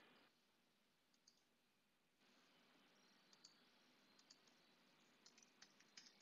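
Near silence, with a few faint computer keyboard and mouse clicks in the second half.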